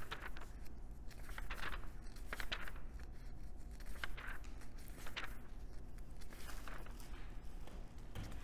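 Paper rustling in short, scattered bursts as pages are turned and shuffled.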